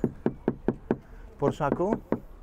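About five quick knocks on the carbon-fibre door of a Porsche 911 GT3 RS, struck with the knuckles within about a second.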